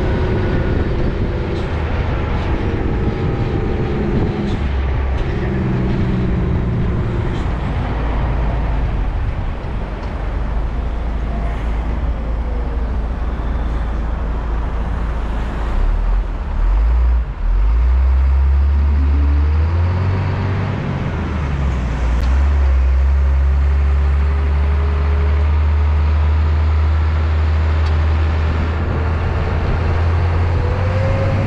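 A car transporter truck driving slowly, heard from high up on its deck: a deep engine drone under road and traffic noise. The engine note rises and falls as it slows and pulls away again, with a brief dip in loudness about seventeen seconds in.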